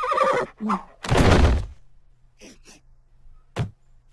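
Cartoon sound effects: a short wavering horse whinny at the start, then a loud heavy thud about a second in as the animated pets dive down behind a couch, and a smaller knock near the end.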